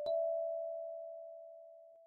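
A kalimba's D5 and E5 tines plucked together once at the start, the two-note chord ringing out and slowly fading; the D5 dies away a little before the E5.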